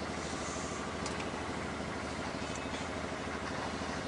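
Steady low drone of an idling engine in the background.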